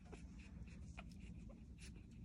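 Near silence: faint rustling and a few soft clicks of handling, over a low steady room hum.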